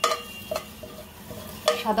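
Ghee melting and sizzling in a hot metal pot with whole spices, with a metal spoon clicking against the pot at the start and again about half a second in.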